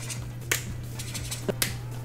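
Sharp plastic clicks of Copic Sketch marker caps being snapped off and on while colours are picked and swatched: one click about half a second in and two close together near the end.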